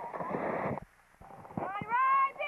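Shrill shouting and cheering from children at a youth baseball game. A short break near silence comes about a second in, then a loud, high, rising yell near the end.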